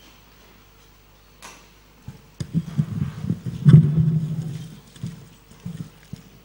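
A cluster of low thumps, knocks and rumbling handling noise from equipment being handled at the keyboard and microphone stand, loudest a little past halfway, with a single click before it and a few lighter knocks near the end.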